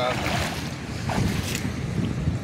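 Wind buffeting the microphone over the steady wash of sea surf on a rocky shore, a continuous noisy rumble with no distinct events.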